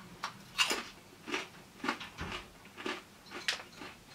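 Crunching of a thick-cut potato crisp being chewed: a run of sharp, separate crunches, about two a second.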